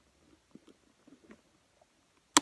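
Near silence, with a few faint small clicks and rubs about halfway through as a thumb works the metal latch of an old camera case.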